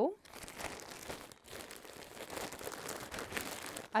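A plastic mailer bag crinkling and rustling as it is handled, a dense run of fine crackles.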